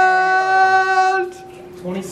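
A man's long, held celebratory "whoa" yell at a steady pitch, which cuts off a little past halfway through.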